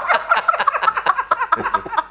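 High-pitched laughter broken into rapid short bursts.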